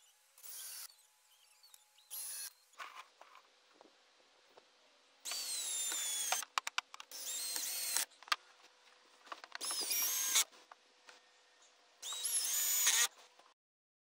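Cordless drill driving screws into treated pine roof trusses in five separate runs, the longest about 3 s in the middle; the motor whine falls in pitch at the start of several runs. A few short clicks fall between the runs.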